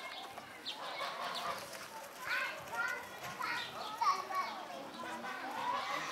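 Children's voices and chatter in the background, coming and going in short calls and exclamations.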